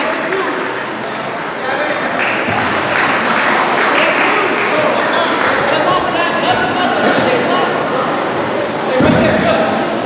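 Overlapping voices of spectators and coaches calling out in an echoing gymnasium, with no single voice clear enough to make out words.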